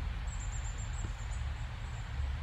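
Steady low background rumble with a faint thin high-pitched warble that lasts about a second.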